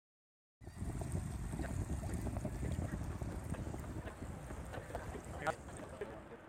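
Low rumbling ambient noise with faint scattered clicks, starting about half a second in after a moment of silence, and a brief pitched squeak near the end.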